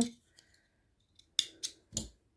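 Small scissors snipping crochet thread: three quick, sharp snips in the second half.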